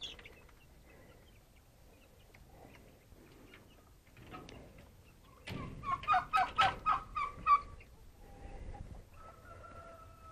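Chicken clucking: a quick run of loud, short clucks lasting about two seconds midway, with fainter scattered clucks before it.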